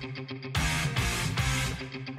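Background music led by guitar: a light picked figure, then loud strummed chords from about half a second in, struck a few times before easing off near the end.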